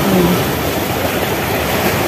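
Sea waves breaking and washing over shoreline rocks: a steady rushing noise.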